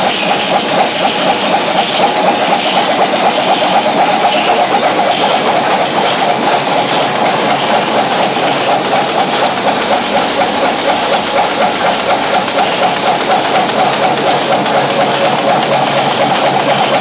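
Thread rolling machine running steadily, with a fast, continuous metallic clatter as screw blanks are rolled and dropped into the collecting pan.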